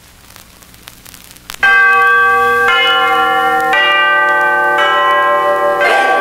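A vinyl 45 rpm single's lead-in groove hissing and clicking, then, about a second and a half in, the record's intro starts loud with bell-like chimes striking a new chord about once a second.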